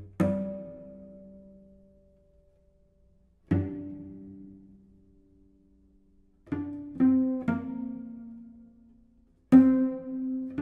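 Cello played pizzicato: plucked notes and chords, each ringing and dying away. They are sparse at first, then come faster, about one every half second, from about two-thirds of the way in.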